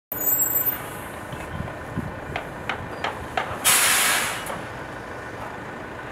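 A few light knocks as a folded agricultural spray drone is handled in a van's cargo area, then a loud hiss lasting about a second midway through, over a steady street background.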